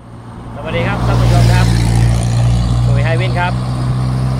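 Steady low hum of a motor vehicle engine running close by. It fades in over the first second and then holds at a loud level, with brief snatches of a voice over it.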